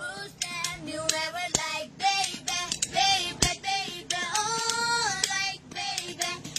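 A woman singing a melody in a high voice, holding some notes, with two sharp clicks partway through.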